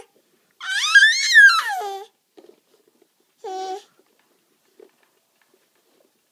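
Baby vocalising: a long, high-pitched squeal that rises and falls in pitch, then a short cry about a second and a half later.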